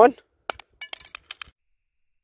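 Aftermarket refurbished Motorola Razr V3m flip phone dropped on its corner onto asphalt: one sharp impact about half a second in, then a quick clatter of small clicks as it bounces and skitters, dying out after about a second.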